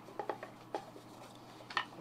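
A few light clicks and taps of a cardboard lens box being handled and opened, the clearest one near the end.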